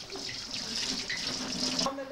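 Water running steadily from a wall tap and splashing into the basin below it, cutting off suddenly near the end.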